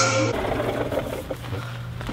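Background music cuts off, followed by the steady low hum of a backpack leaf blower's small two-stroke engine idling.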